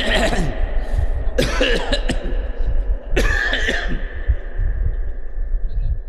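A man coughing and clearing his throat into microphones, amplified through a public-address system, in short bursts about a second and a half apart. A steady tone from the sound system lingers after the last burst, and a low hum runs throughout.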